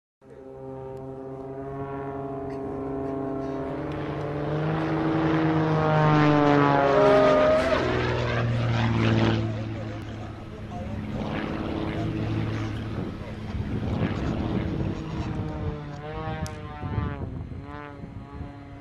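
Propeller engine of a single-engine aerobatic plane running hard overhead, its pitch and loudness climbing for a few seconds, then dropping sharply about halfway through as it passes, then carrying on lower with smaller swells as the plane keeps manoeuvring.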